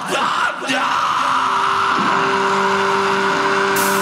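Live metal band's intro on stage: a brief shout into the microphone, then a held, level droning chord under crowd noise. Cymbal strikes come in near the end as the song builds.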